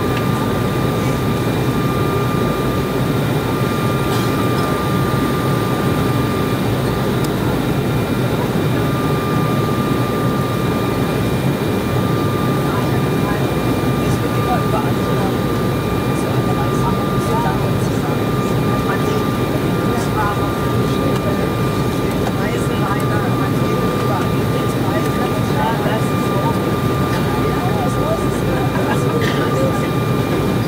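Steady cabin noise of an Embraer 190 airliner on final approach, heard from a window seat by the wing: a constant low rush of airflow and engine sound from its General Electric CF34 turbofans, with a thin steady whine above it.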